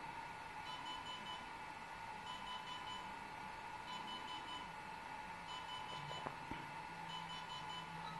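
DJI Inspire 1 drone giving its unusual beeping while updating its firmware: faint quick groups of four short high beeps, repeating about every second and a half, over a faint steady tone. The beeps signal that the firmware update is in progress.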